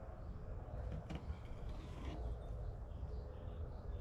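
Quiet outdoor background with a steady low rumble, and faint scrapes of a knife slicing a barracuda fillet on a fish-cleaning table, with a couple of soft ticks about a second in.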